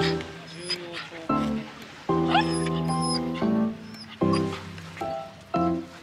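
Background music with sustained notes that start and stop abruptly. Over it a miniature schnauzer gives a few short, high, rising whines.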